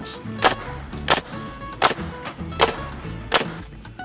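Pneumatic framing nailer firing five times, about one shot every 0.7 seconds, driving nails into a clamped wooden deck joist.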